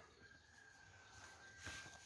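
Near silence: room tone with a faint steady high whine, and a brief faint rustle near the end.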